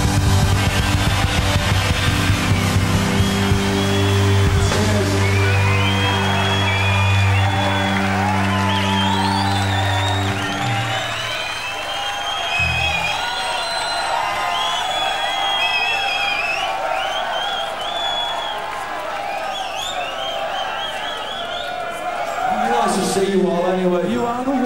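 A rock band's final chord held and ringing on amplified guitars and bass, cutting off about ten seconds in, while a concert crowd cheers, whoops and whistles. The cheering and whistling go on after the chord has stopped.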